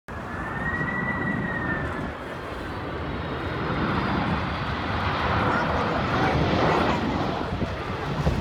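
Boeing 767-300 jet airliner on final approach passing low overhead, its engine noise a steady rush that slowly grows louder, with a thin high whine in the first couple of seconds.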